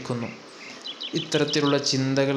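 A man's voice preaching in Malayalam, breaking off briefly and resuming about a second and a half in, with faint high chirps in the background during the pause.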